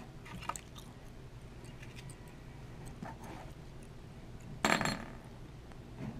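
Silver rounds in clear plastic sleeves being handled on a table: faint scattered handling sounds, with one sharper clink about three-quarters of the way through.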